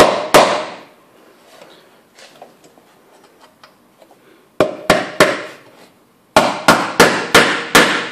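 Small ball-peen hammer tapping a metal pin into a hole in the end of a metal square bar: two sharp taps at the start, a pause, three taps about five seconds in, then a steady run of taps about three a second near the end.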